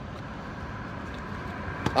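Steady, even rush of road traffic in the background, with a short click just before the end.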